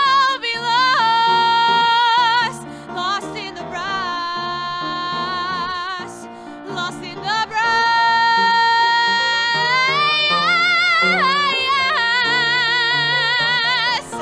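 A woman belting long held notes with wide vibrato over piano accompaniment. She climbs to a final held note that stops sharply near the end.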